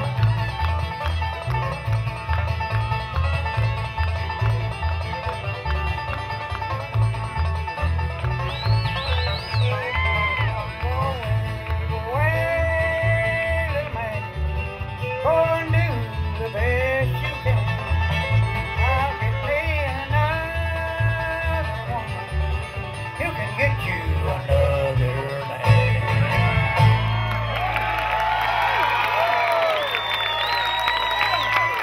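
A bluegrass band playing live, with banjo and acoustic guitars over a steady bass beat and a bending lead melody line. Near the end the tune closes on a held note as audience applause comes in.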